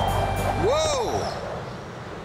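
A gust of wind rushing and then dying away, with one short rising-and-falling cry about half a second in.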